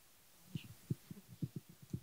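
Handling noise from a handheld microphone as it is picked up and brought to the mouth: a run of soft, low, irregular thumps and knocks starting about half a second in.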